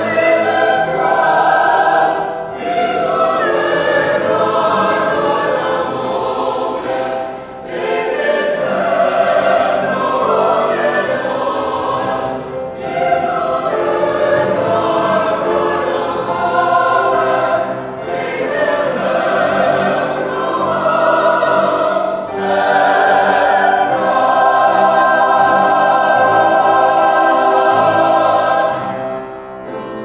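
A choir singing sacred music in phrases of about five seconds with short breaks between them, fading out near the end.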